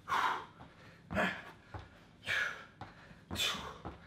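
A man breathing hard through a fast bodyweight exercise, with a forceful exhale or gasp about once a second, four in all. Soft low thumps come between the breaths.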